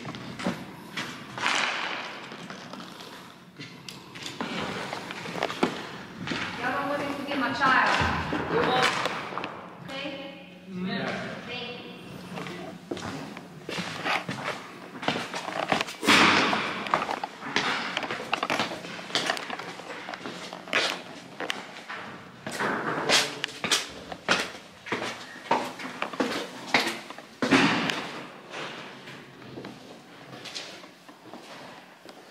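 Indistinct voices with scattered thumps, knocks and footsteps on hard floors and concrete stairs; the sharp knocks come thickest in the second half.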